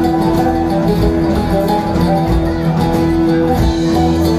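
Oud playing an instrumental passage of quick plucked notes in live Greek band music, over steady held low notes from the accompaniment.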